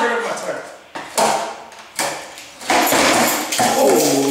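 Skateboard knocking on a concrete garage floor: about four sharp clacks of the deck and wheels striking the concrete, each trailing off briefly in the bare garage.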